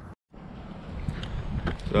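Low rumbling wind noise on the camera microphone, with a few faint handling clicks. It follows a brief drop to silence at an edit cut, and a man's voice starts just at the end.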